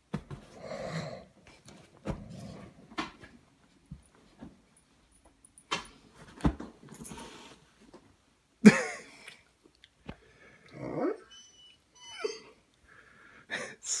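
A St. Bernard breathing hard in irregular, noisy puffs. There are a few sharp clicks, and a short, louder voice-like sound about nine seconds in.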